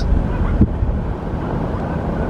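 Steady low rumble of a car driving slowly, heard from inside the cabin, with a soft knock just over half a second in.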